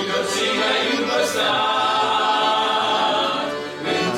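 A male vocal group singing a hymn in harmony, accompanied by two piano accordions. The voices hold long notes, with a short break between phrases near the end.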